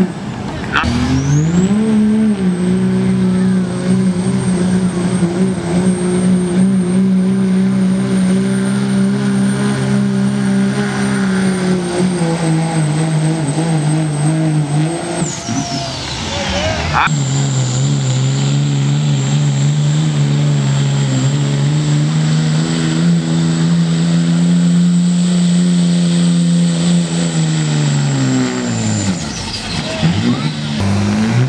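Diesel pickup trucks at full throttle pulling a weight-transfer sled, in two runs. Each engine holds high revs under load with a high steady turbo whistle over it, then winds down: the first about halfway through, the second near the end.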